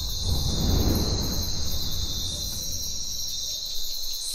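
Steady high-pitched insect chirping, with a low rumble that swells and fades over the first second or two.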